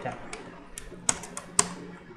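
Computer keyboard being typed on: a handful of separate keystrokes at an uneven pace.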